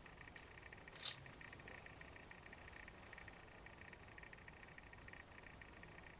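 A cloth rubbing along a carbon-fibre hockey stick shaft, wiping excess epoxy off the repair joint. There is one brief, louder swish about a second in. Under it runs a faint, steady, high-pitched rapid trill.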